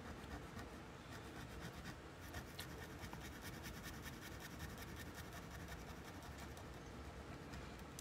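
Faint pen nib scratching across a paper tile in many quick, short strokes while drawing.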